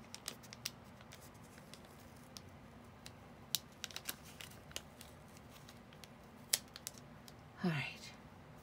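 Scattered light clicks and crinkles of a thin paper sticker being pressed, peeled and smoothed down by fingertips on a paper journal page, the sticker clinging to the fingers. Near the end comes a brief vocal sound falling in pitch.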